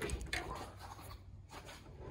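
Steel hood of a 1963 Mercury Comet being lifted open by hand: a few faint scrapes and rubs from the hand and hinges in the first half second, then quieter.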